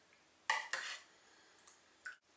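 A metal ladle clinking against the dishes while hot dessert mixture is ladled from a steel pan into a small glass bowl: two short ringing clinks about half a second in.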